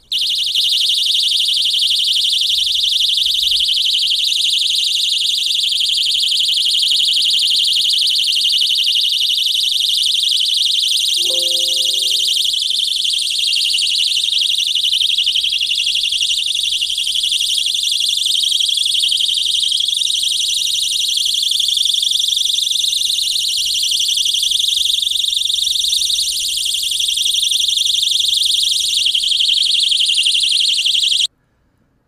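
PeakPlus personal safety alarm keychain screaming once its activation button is pressed: a loud, shrill, high-pitched electronic alarm tone that sounds without a break.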